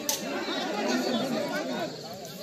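Background chatter of several people talking at once around a football pitch, with a single sharp knock right at the start.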